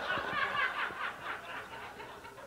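An audience laughing together at a joke, many voices at once, fading away toward the end.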